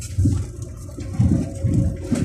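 Vehicle heard from inside the cabin creeping along a rocky dirt track: a steady low engine hum under heavy low rumbles and jolts as the wheels go over stones. There is a short jolt just after the start and a longer rumbling stretch from about a second in.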